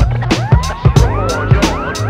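Hip-hop instrumental: a drum beat with many short rising sweeps layered over it.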